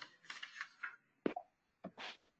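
Two short, faint clicks about half a second apart, after a few soft, brief mouth or breath noises.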